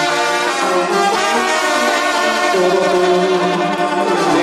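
Banda sinaloense playing an instrumental passage without singing: trumpets, trombones and clarinets in harmony, with lower notes coming in about two and a half seconds in.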